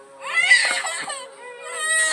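A small child crying in a high, wavering wail that starts about a third of a second in, is loudest just after, and carries on more quietly.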